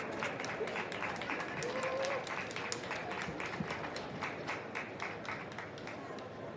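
Audience applauding: a dense run of separate hand claps from spectators that thins out near the end.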